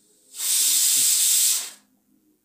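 A steady hiss lasting about a second and a half, starting shortly in and stopping a little before the end.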